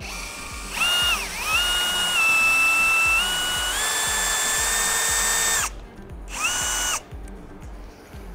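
Bosch brushless cordless drill-driver with a T10 Torx bit, running to back out a window's retaining screws. There is one long run of about five seconds, whose whine dips briefly and then steps up in pitch partway through, followed by a short second burst.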